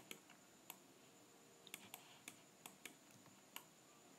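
Near silence with faint, scattered clicks of a computer mouse's buttons and scroll wheel, about eight over the few seconds.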